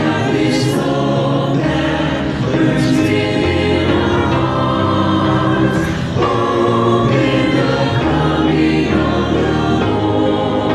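Mixed choir of men's and women's voices singing a gospel song in harmony, with long held chords that change every second or two.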